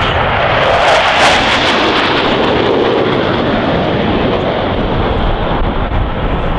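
A formation of four F/A-18F Super Hornet jet fighters, each with twin GE F414 turbofans, flying low past. A loud rushing jet noise, loudest about a second in, with a pitch that drops as the jets go by and then slowly eases off.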